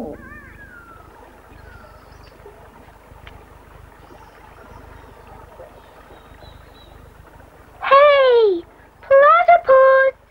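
A girl calling out loudly through cupped hands, two long drawn-out calls near the end, the first sliding down in pitch and the second held on one note with short breaks. Before the calls there is only faint background.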